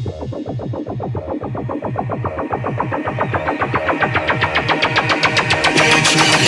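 Electronic dance music build-up: a fast, even synth pulse that grows brighter and slightly louder toward the end.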